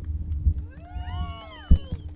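Wind rumbling on a handheld microphone, with a cluster of whistling tones that rise and then fall in pitch. A single sharp thump of the microphone being handled comes near the end.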